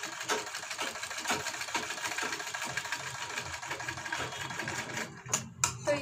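Domestic sewing machine running steadily with a rapid, even clatter as it stitches a fabric strip along a blouse's back neckline. It stops about five seconds in, followed by a couple of sharp clicks.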